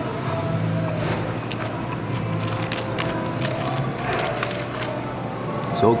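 Coleslaw being chewed close to the microphone, a scatter of small crisp crunches, over a steady dining-room background hum.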